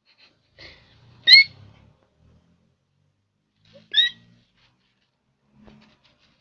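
Duckling peeping: two short, high peeps about two and a half seconds apart.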